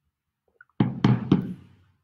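Three quick knocks on a hard surface, a quarter second apart, starting a little under a second in and dying away.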